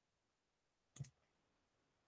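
Near silence broken by a single short computer mouse click about a second in.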